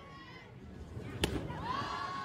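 A single sharp pop as a fastpitch softball pitch smacks into the catcher's mitt, followed by a long held high-pitched call from a voice.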